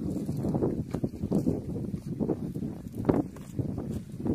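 Irregular soft thuds and knocks, with a sharper knock about three seconds in.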